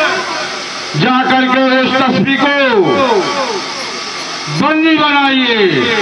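A man's voice in two long, drawn-out phrases with held and falling pitch, like stage declamation or chanting, with a hissing pause before and between them.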